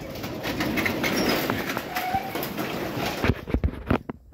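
Sectional garage door rolling open, its rollers rattling in the tracks, followed by a few sharp knocks near the end.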